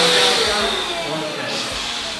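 Electric balloon pump running as it inflates a latex balloon: a steady motor hum with a rush of air. The hum's tone drops out about half a second in, and the air noise carries on, slowly easing.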